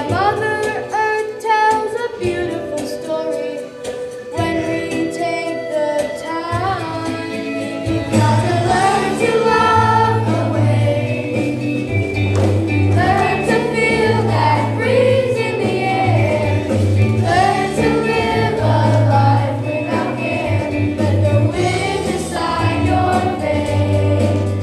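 A children's chorus sings a song with accompaniment; a strong bass line comes in about eight seconds in and the music grows fuller.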